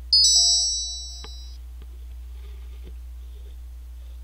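An electronic alert chime: several high tones ring together, starting suddenly and fading out over about a second and a half.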